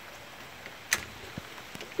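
Steady hiss of rain falling, with one sharp click about a second in.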